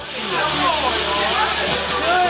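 Ground fountain firework hissing steadily as it sprays sparks, with people's voices over it.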